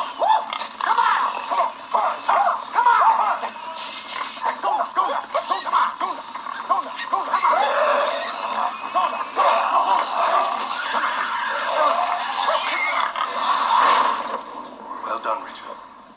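Pigs grunting and squealing in a TV show's soundtrack, many short calls one after another, with music underneath.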